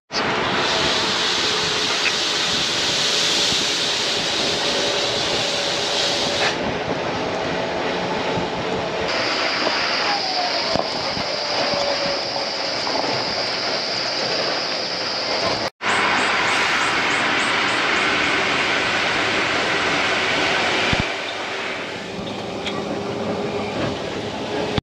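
Cabin noise of a moving bus on a hill road: steady engine and road rumble with rattling. A steady high-pitched whine joins about nine seconds in, and the sound drops out for an instant about two-thirds of the way through.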